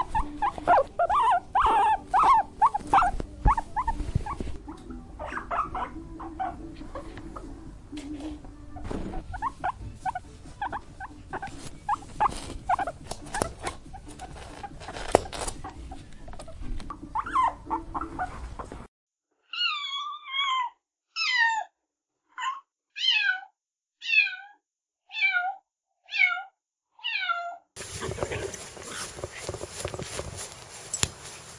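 Small animals calling: a quick run of short, high chirps and squeaks, with meerkats at a burrow and then caracal kittens. Then comes a run of about eight clear, falling mews about a second apart, like a kitten's.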